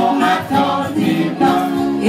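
Singing voices carrying a melody in held notes that change every fraction of a second.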